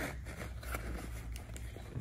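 Faint rustling and scraping of a nylon webbing strap being pulled through MOLLE loops on a rifle scabbard and pack frame, with a few soft handling ticks.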